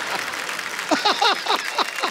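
Hearty laughter: a quick run of falling 'ha's that starts about a second in, over a low crowd noise.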